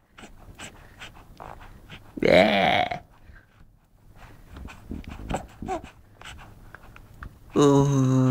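Wordless voices cooing with a baby: a loud coo that rises and falls about two seconds in, then soft mouth noises and small vocal sounds, then a long, steady, low hum starting near the end.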